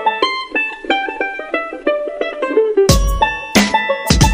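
Background music: a quick melody on a plucked string instrument, with the beat dropping out and coming back in about three seconds in.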